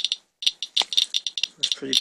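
Geiger counter clicking rapidly and irregularly at about 700 counts per minute as it reads a rain swipe: roughly twenty times the usual background of 34 counts per minute.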